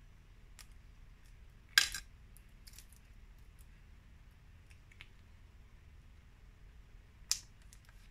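A few light, sharp taps and clicks of a hand tool and small die-cut paper pieces against a glass cutting mat. The clearest comes about two seconds in and another near the end, over a quiet room.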